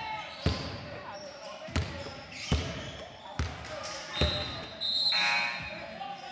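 A basketball bouncing on a hard floor, about five bounces at even spacing under a second apart. A louder sustained tone with overtones sounds near the end.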